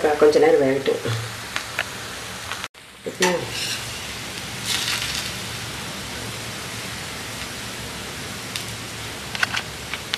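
Dosa batter sizzling steadily on a hot cast-iron dosa pan, with a few faint clicks.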